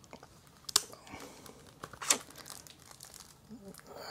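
A CD's packaging being handled: small rustles and ticks, with two sharp clicks about a second apart near the start and middle.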